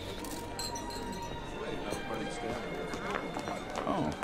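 Indistinct chatter of a crowd of guests, with music playing underneath, at a steady level.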